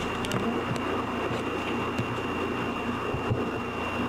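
Steady background hiss and low hum with a faint, thin high whine, the noise floor of a covert-camera recording, with a couple of faint clicks.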